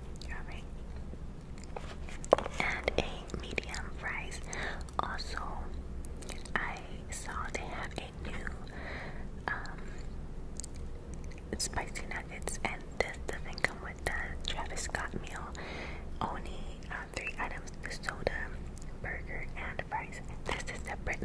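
Close-miked ASMR eating sounds of a person biting into a McDonald's Quarter Pounder burger and chewing it: a sharp bite a little over two seconds in, then irregular wet chewing and mouth clicks.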